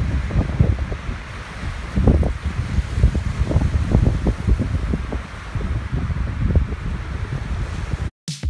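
Strong gusting wind buffeting the phone's microphone in uneven bursts, over the steady wash of small choppy waves breaking on a rocky shore.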